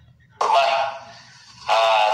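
A man's voice begins speaking about half a second in, in short phrases with a brief pause in between: the opening of a recorded video message.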